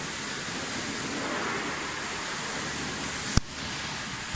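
Steady rushing background hiss, with one sharp click about three and a half seconds in.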